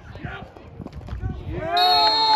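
Sideline spectators' faint shouting, then near the end a loud, long drawn-out yell from the crowd, low and moo-like, with a steady high referee's whistle blast starting at the same moment.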